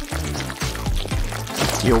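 Sticky marshmallow slime squelching wetly as it is stirred and squeezed by hand in a glass bowl, over background music with a steady bass.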